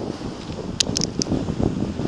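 Wind buffeting the microphone in a low, rough rumble, with a few short sharp clicks about a second in.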